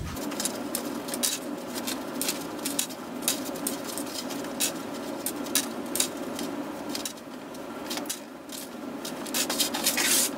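Irregular small metal clicks and taps as enamel pins are unfastened from a fabric apron, their clutch backs pulled off and the pins set down on a tabletop.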